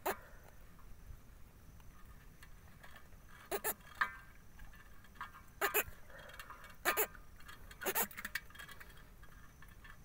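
Sharp clicks and taps, mostly in close pairs, about six times, as a fishing hook is worked out of a catfish's mouth over an aluminium pot.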